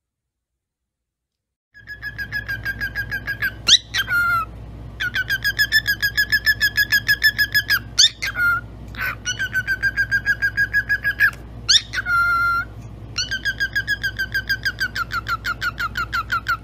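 Cockatiel chirping in long runs of short, quickly repeated notes, about six a second, broken by a few sharp upward whistles. It starts about two seconds in, over a low steady hum.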